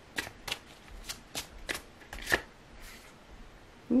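Tarot deck being shuffled by hand: a run of about ten sharp card snaps over roughly three seconds, stopping shortly before the end.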